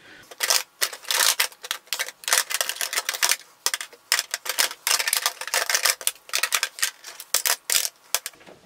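Plastic makeup compacts clacking against each other and against a clear plastic storage box as they are shuffled and packed in upright by hand: a rapid, irregular run of light clicks and knocks.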